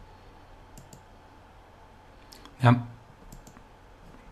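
A few faint computer-mouse clicks: a pair about a second in, one more just past two seconds, and another pair near the end.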